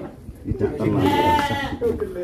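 A sheep bleating once: a single long call starting about half a second in.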